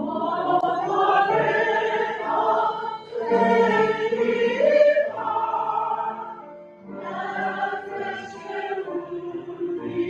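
A choir singing a slow song in long held phrases, with short breaks between phrases about three and seven seconds in.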